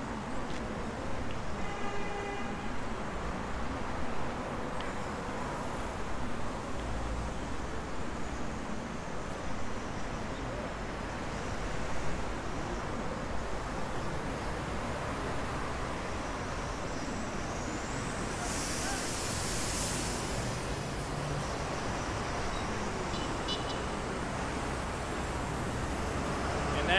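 Steady road traffic noise from a busy city street. A short car horn toots about two seconds in, and a brief loud hiss from a passing vehicle comes about three quarters of the way through.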